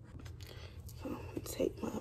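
A person whispering quietly under the breath in the second half, over a low steady hum.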